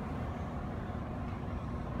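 Low, steady background rumble inside a concrete parking garage.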